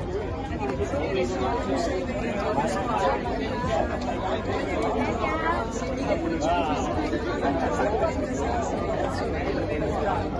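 Crowd of people chattering, with many voices overlapping in a steady babble and no single speaker standing out.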